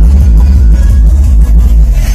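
Bass-heavy music played very loudly through a home sound system, with deep subwoofer bass strongest and continuous throughout.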